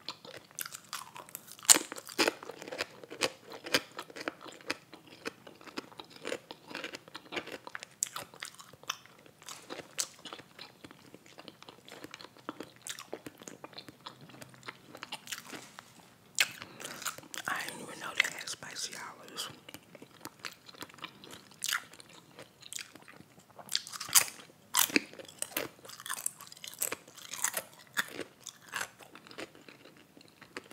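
Close-miked eating: biting and chewing a toasted sub roll and crunchy potato chips, with irregular crisp crunches throughout and the loudest crunch about two seconds in.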